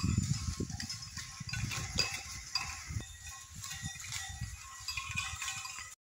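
A large herd of goats grazing and moving through leafy undergrowth, with irregular rustling and crackling of vegetation throughout.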